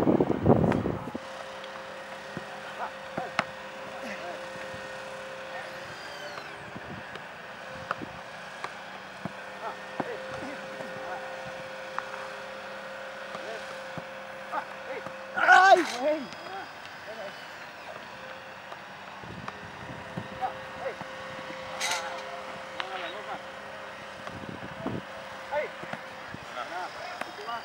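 Football goalkeeper drills: scattered thuds of the ball being struck and caught, with two brief shouts, one right at the start and one about halfway through. A steady engine hum runs underneath.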